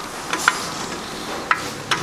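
Four light, sharp metal clicks spread over two seconds as a balance shaft is worked by hand in its bore in a VW/Audi EA888 engine block, over a steady hiss.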